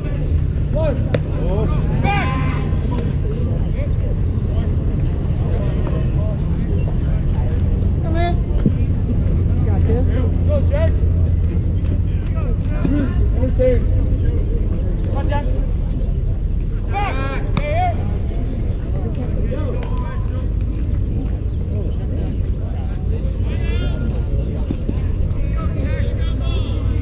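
Voices calling out now and then across a baseball field, over a steady low rumble.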